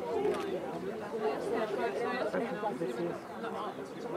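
Indistinct chatter: several people talking at once in overlapping conversation, no single voice standing out.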